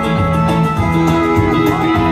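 Live band playing a song through a stage PA: electric guitar, bass guitar and keyboard over a steady beat.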